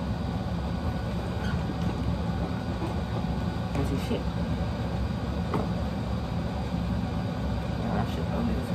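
A steady low mechanical hum with no break or change, under faint low voices.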